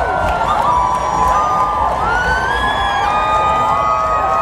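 A large crowd of parade spectators cheering, with many voices calling and shouting over one another at once.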